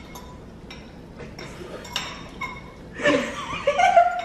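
Metal forks clinking against glass bowls several times in the first two and a half seconds, short light clinks with a brief ring. Laughter and a voice come in near the end.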